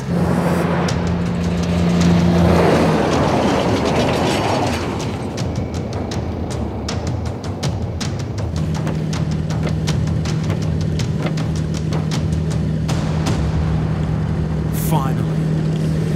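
Heavy rain drumming and spattering on a truck's windscreen and cab as it drives through a storm, with a swelling rush about two seconds in and sharp ticks of drops from about five seconds on. A steady low music drone runs underneath.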